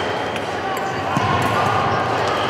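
Sports hall during a fencing tournament: a steady background of voices and hall noise, with dull footfalls on the floor and one sharper thud just past a second in.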